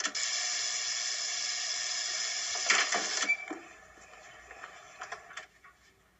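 Apartment door-entry buzzer sounding steadily for about three seconds as the entrance lock is released, then cutting off. Clicks and knocks follow, at the end of the buzz and again about two seconds later.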